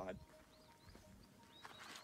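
Quiet outdoor ambience, nearly silent, then near the end a short rising whoosh of a video transition effect leading into music.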